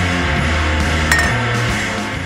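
Background rock music with guitar, and about a second in a single glass clink as a glass Erlenmeyer flask is knocked over onto the bench.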